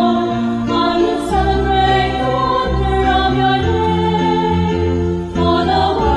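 Choir singing the recessional hymn at the close of Mass, in sustained chords that change every second or so.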